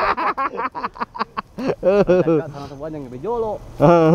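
Men's voices: a man laughing in a quick run of short bursts, then talking.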